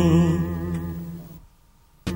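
A man's cải lương singing voice holds the last note of a phrase with a wavering vibrato. The note fades away over about a second and a half and ends in a brief silence.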